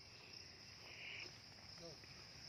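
Faint, steady high-pitched chirring of insects such as crickets, with a brief louder buzz about a second in.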